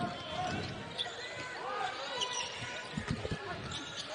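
A basketball being dribbled on a hardwood court, with a few thumps of the ball close together about three seconds in and sneakers squeaking, over arena crowd chatter.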